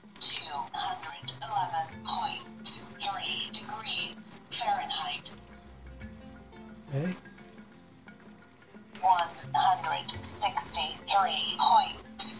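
Talking digital meat thermometer announcing the temperature in a slow, tinny synthesized voice from its small built-in speaker, in two stretches with a pause of a few seconds in between; boiling water faintly under it.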